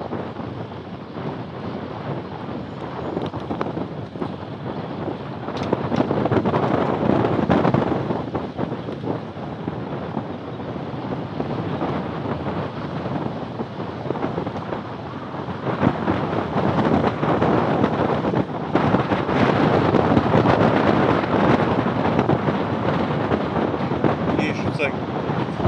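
Wind buffeting the microphone of a camera riding in a boat towed on its trailer: a dense, steady rush that swells louder about six seconds in and again from about sixteen seconds on.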